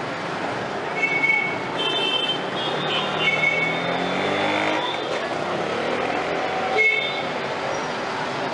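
Busy street ambience: road traffic running steadily, with passers-by talking. Several short high-pitched tones sound over it, about four in all.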